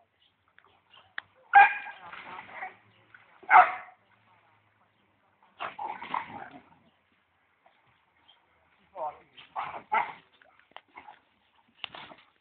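A dog barking and whining in separate bursts, two loud sharp ones about one and a half and three and a half seconds in, then further bursts around six seconds and a cluster near ten seconds.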